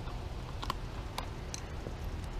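A few light, sharp clicks of a hand tool working the bar-end weight on a motorcycle handlebar, over a low steady background noise.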